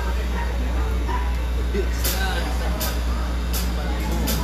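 Background voices and chatter over a steady low hum from the stage sound system, with a few sharp ticks in the second half.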